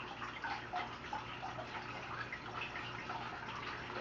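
Faint background sound: a steady low hum under a soft hiss, with scattered small drip-like ticks.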